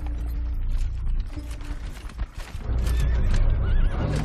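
Horses neighing and hooves clattering over a steady low rumble, with a wavering whinny near the end.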